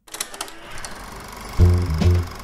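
Film projector running, a rapid mechanical clatter over hiss, with music coming in about one and a half seconds in.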